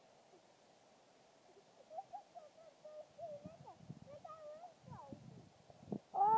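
A faint, distant child's voice calling in a wavering sing-song, starting about two seconds in, with a few soft low thumps toward the end.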